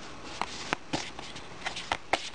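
Playing-size oracle cards being handled on a table: a handful of light, irregular clicks and taps as a card is picked up from the deck.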